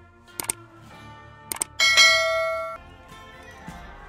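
Subscribe-button animation sound effects: two quick double mouse clicks about a second apart, then a bright notification bell ding that rings for about a second and cuts off, over faint background music.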